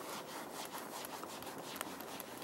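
Handheld whiteboard eraser rubbing back and forth across a whiteboard in repeated soft strokes, wiping off a marker drawing.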